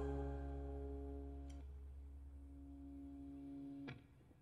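A live band's held chord dying away: steady sustained notes over a low hum fade out. Most of them stop about a second and a half in, and the last note is cut off sharply near the end.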